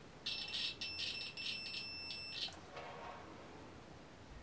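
Digital multimeter's continuity beeper sounding a steady high beep for about two seconds, broken by a few brief dropouts: the probes have found a conductive path, here through the swatch's conductive yarn.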